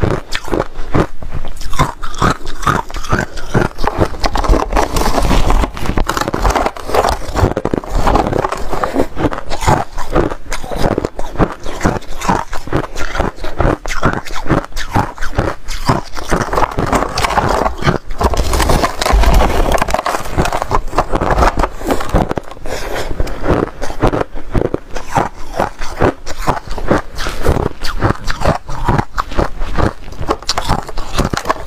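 A person biting and chewing white shaved ice: a dense, continuous run of rapid crunches.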